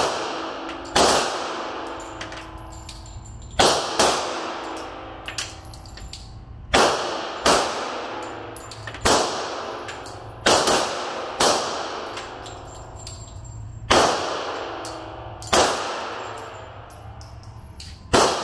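Semi-automatic pistols fired one shot at a time by several shooters on an indoor range, about a dozen shots spaced irregularly a second or more apart, each ringing off the concrete walls. A few fainter shots come from further along the line.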